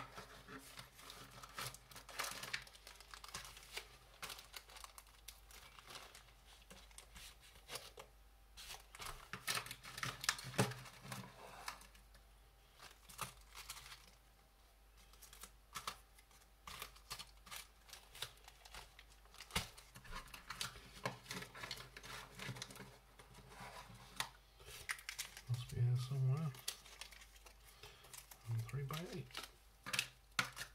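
Small plastic zip bags of screws crinkling as they are picked up and shuffled about, with many small clicks of the screws and bags on the bench. The sound comes and goes, with a quieter spell around the middle.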